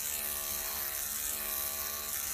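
Electric dog grooming clippers running with a steady hum.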